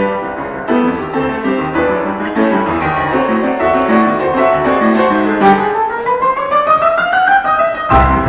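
Grand piano played solo, a busy stream of notes, with a long rising run over the last two or three seconds.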